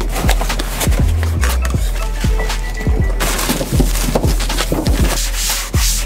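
A cloth rubbing back and forth over a sheet of steel, wiping it down with acetone to degrease it before gluing, over background music.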